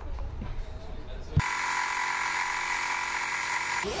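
Electric power tool motor running at one steady pitch with a buzzing tone. It starts abruptly with a click about a second and a half in and cuts off just before the end.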